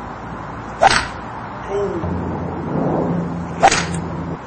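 Two crisp strikes of a Ping G15 stainless-steel hybrid golf club hitting balls off turf, one about a second in and one near the end. A low steady hum runs under the second half.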